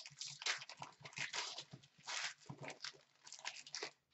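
A trading-card pack wrapper crinkling and tearing as it is opened by hand, in quick irregular crackles.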